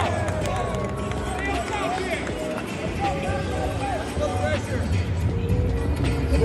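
Indistinct shouting voices over general hall noise, with music playing underneath.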